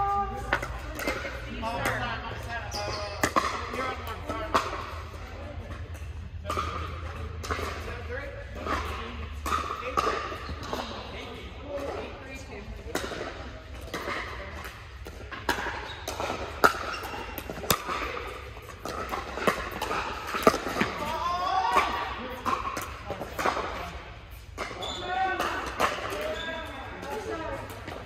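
Pickleball paddles striking a plastic ball and the ball bouncing on a hard court, many sharp pops scattered irregularly, in a large indoor hall.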